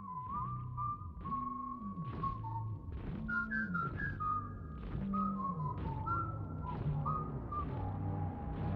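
Music led by a whistled tune whose notes slide up and down, over a low bass line that also glides between notes.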